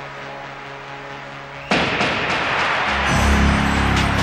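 Film-score music: quiet held chords, then a sudden loud crash into fuller music about two seconds in, with a deep bass coming in near the end.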